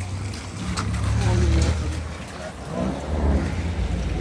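Steady low rumble of traffic on a wet street, with faint voices about a second in and again near the end.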